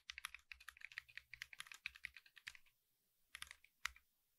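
Faint computer keyboard typing: a quick run of key clicks for about two and a half seconds, a short gap, then a few last keystrokes near the end as the command is entered.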